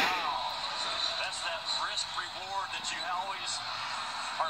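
A college basketball TV broadcast playing through a phone speaker: a commentator talking faintly.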